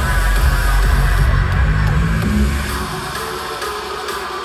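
Loud electronic dance music from a live DJ set over a big venue's sound system, recorded from within the crowd. The heavy bass cuts out nearly three seconds in, leaving a quieter breakdown.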